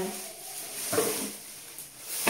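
Empty plastic bottles being handled and a faint rustle as one bottle is put down and the next is taken out, with a brief voiced murmur about a second in.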